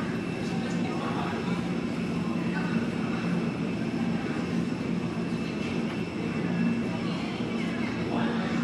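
Airport terminal ambience: a steady low hum with the faint murmur of people's voices.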